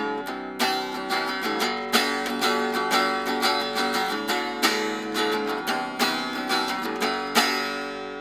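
Semi-hollow electric guitar strummed unplugged, its acoustic sound only: a run of chords, the last one near the end left ringing and fading.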